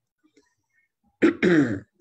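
A man clears his throat once, a short voiced "ahem" starting a little over a second in.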